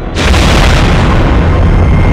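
Cinematic explosion: a sudden, very loud blast a moment in, followed by a sustained heavy rumble of burning wreckage breaking apart.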